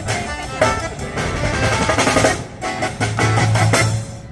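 Live street-band music: an accordion playing held chords and melody over a plucked double bass and a small drum kit keeping a steady beat. The music briefly drops in level about two and a half seconds in.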